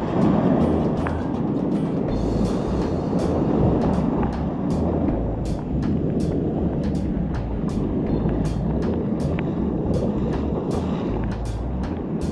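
Ocean surf breaking and washing around in shallow water, a steady loud roar, with wind buffeting the microphone in uneven low rumbles.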